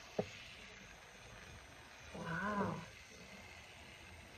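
Faint steady hiss of a L'Oréal Steampod 3.0 steam straightener giving off steam as it heats up. A sharp click comes shortly in, and a brief wordless vocal sound from a woman follows about two seconds in.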